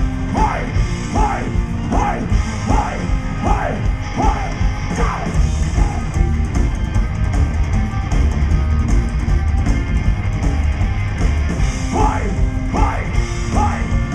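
Psychobilly band playing live and loud: upright bass, two electric guitars and drums. A repeated falling sound comes about every three-quarters of a second over the first few seconds and again near the end.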